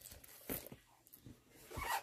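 Books and mail packaging being handled and moved: a brief scrape about half a second in, then a louder rustle near the end as the next package is picked up.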